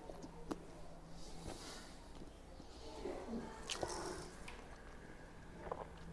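A man quietly eating a chicken sandwich close to a clip-on microphone: faint chewing and mouth sounds with a few light clicks and rustles over a low steady hum.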